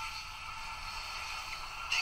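A quiet, steady passage of a film trailer's soundtrack playing through a phone's small speaker: a faint sustained drone with hiss, thin and lacking bass.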